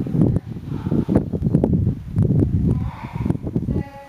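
Irregular low rumbling noise buffeting the camera microphone, surging and dropping every half second or so.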